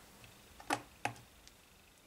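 Two faint, sharp clicks about a second apart, with a couple of softer ticks around them: small plastic parts and test clips being handled and set down on a hard tabletop beside a component tester.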